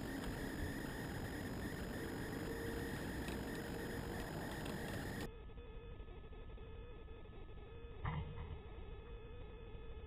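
Faint steady outdoor background, then about eight seconds in a single short knock as the propped-up plastic basket of a homemade bird trap drops shut: the trigger has been sprung by a bird.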